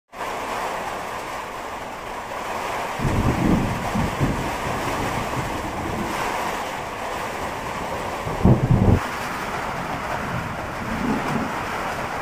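Storm wind rushing steadily against a corrugated-tin house, with two louder low rumbling gusts, one about three seconds in and the loudest near the nine-second mark.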